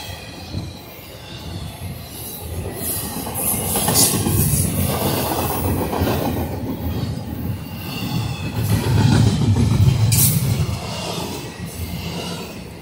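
Freight train cars rolling past close by: a steady rumble of steel wheels on the rails, swelling and easing as cars go by. Brief high wheel squeals come about four seconds in and again near ten seconds.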